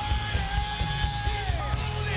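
Live gospel song by choir and band with drums and keyboard, on a steady beat. One long high note is held for about a second and a half, then slides down.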